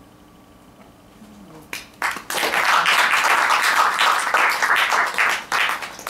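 Audience applauding, the clapping breaking out about two seconds in and dying away shortly before the end.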